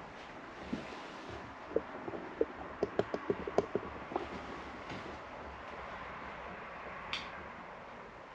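A quick, irregular run of short knocks and creaks lasting about two seconds, over a steady background hum of road traffic.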